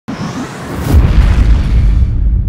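Logo-intro sound effect: a rising whoosh that breaks into a deep boom about a second in, followed by a sustained low rumble.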